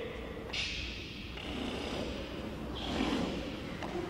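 Two sharp, hissing exhalations from a kicker breathing out hard as the kicks go out, one about half a second in and another near three seconds, with a brief knock just before the end.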